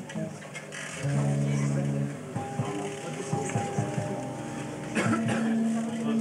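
Six-string electric bass played through an amplifier: a few plucked low notes, each left to ring for a second or two, with lighter plucks between them.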